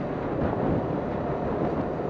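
Steady rush of wind over a helmet-mounted action camera's microphone while riding a scooter, mixed with road and engine noise.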